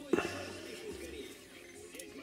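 A man's low, wordless murmur in the first second, then quiet handling.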